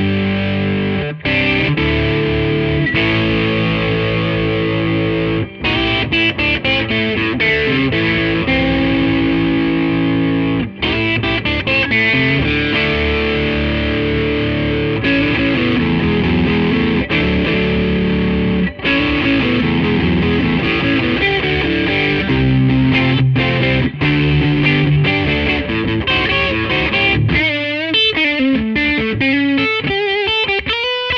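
Gibson Custom Shop Historic 1957 Les Paul goldtop, played on both BurstBucker pickups together through an overdriven amplifier: sustained chords and riffs with a few short breaks, and bent, wavering notes near the end.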